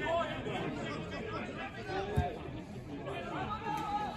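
Pitchside chatter at a football match: several voices of players and spectators talking and calling out over one another, none of them clear. A single dull thump comes about two seconds in.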